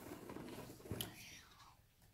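Faint rustle of a picture book's paper flap being lifted open by hand, with a soft click about a second in.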